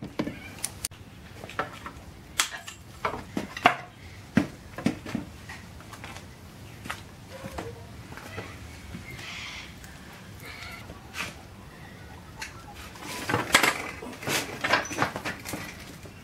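A socket ratchet and hammer working the U-bolt nuts on a leaf-spring rear axle: a run of sharp metal clicks and knocks, thickest in the first few seconds and again near the end.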